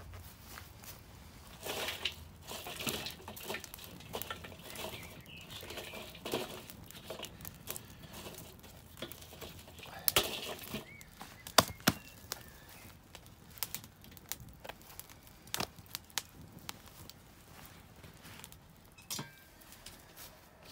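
Wood fire crackling in a metal fire-pit bowl, with scattered sharp pops and cracks. About halfway through, a split log is laid onto the burning wood with a few louder knocks.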